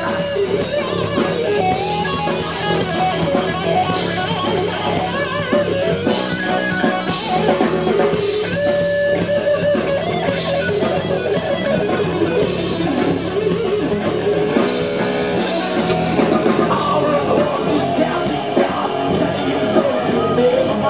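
Live rock band playing loud: electric guitar over bass guitar and a drum kit, with no singing in this stretch.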